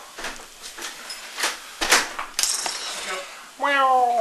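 A few light clinks and knocks on a tabletop, then near the end a single drawn-out domestic cat meow that falls in pitch, the loudest sound here.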